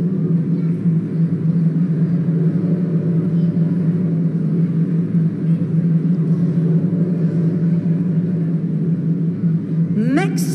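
Suspense drum roll: a low, steady rumble at one pitch, held unbroken.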